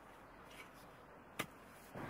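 Near silence with one short click about one and a half seconds in, from a garden fork being worked into hard soil.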